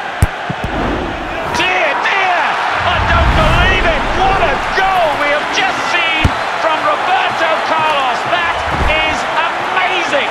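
A football struck hard in a free kick: one sharp thud just after the start, the loudest sound here. It is followed by a din of many overlapping excited voices, with another sharp thud about six seconds in.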